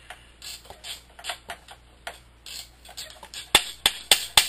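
Metal-on-metal clicks and clinks of an Alaskan chainsaw mill's clamp being fitted and positioned on a chainsaw bar. The clicks are irregular, and a sharper, quicker run comes near the end.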